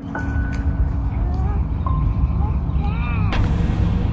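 Outdoor phone-camera sound dominated by a steady low rumble of road traffic, with a few short high chirps in the middle of it.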